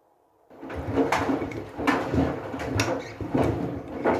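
Front-loading washing machine drum starting to turn about half a second in, tumbling a wet load through shallow wash water with sloshing. Several sharp knocks come through it, from the cloth bag of clothespins striking the drum.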